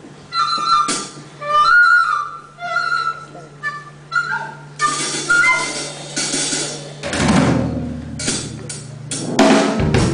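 Live band starting a song: short, high melodic notes, then drum-kit hits and cymbal crashes, with the band coming in fully near the end.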